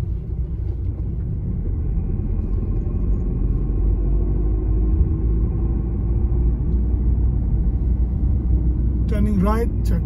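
Car cabin noise while driving: a steady low rumble of engine and tyres on the road, growing a little louder over the first few seconds as the engine note rises slightly in pitch.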